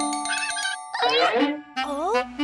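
Cartoon soundtrack: a few held chime-like tones for about a second, then a short cartoon vocal sound that slides in pitch, rising near the end.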